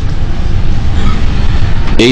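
Loud, steady rushing noise with a low rumble underneath.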